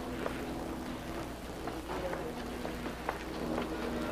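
Wet string mop swishing across a tiled floor, with a few light knocks and clicks, over a faint low hum.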